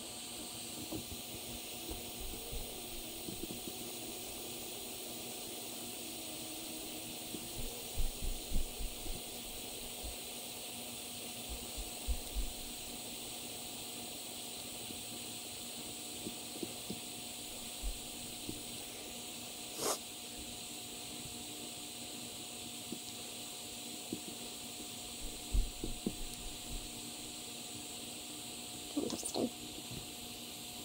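Steady hiss of a Mag-Torch butane soldering iron burning letters into the wooden arm of a tip-up. A few short soft knocks come from handling the tip-up, about eight seconds in, again near twenty seconds, and near the end.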